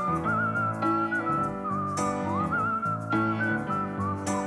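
A whistled melody with a wavering vibrato, carried over sustained keyboard chords, with a sharp percussive hit about every two seconds.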